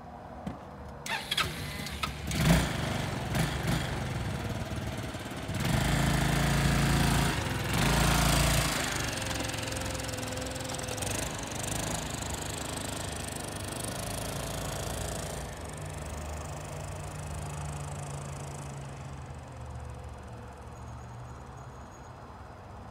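Honda Helix 250 cc scooter's single-cylinder engine, with a few sharp knocks in the first seconds, then revving loudest as the scooter pulls away about six seconds in. It keeps running steadily and fades as it rides off into the distance.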